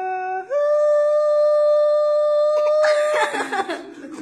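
A voice sings one long held note off-camera, stepping up to a higher pitch about half a second in and holding it steady for over two seconds. Near the end the baby breaks into a cry.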